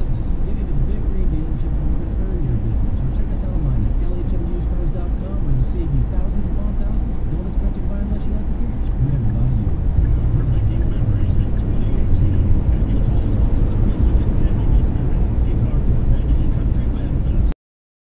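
Steady road and engine rumble heard inside a moving car's cabin at highway speed, with an indistinct voice mixed in.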